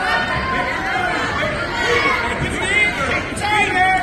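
Several spectators' voices overlapping: chatter and calls from the crowd in a gymnasium, with no one voice standing out.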